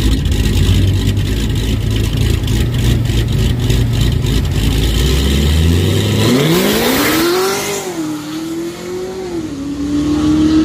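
Supercharged V8 of a Cadillac CTS-V coupe drag car idling at the starting line, then launching about six seconds in. The engine pitch rises sharply under full throttle, dips at two upshifts, and the sound fades as the car pulls away down the strip.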